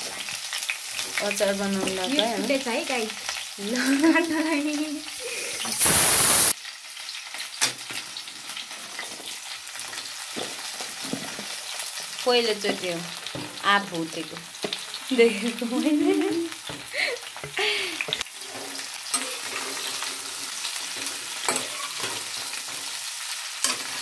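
Green mango slices frying in oil in a non-stick wok, with a steady sizzle and the scrapes and clicks of a metal spoon stirring them. About six seconds in there is a sudden loud hiss, about half a second long.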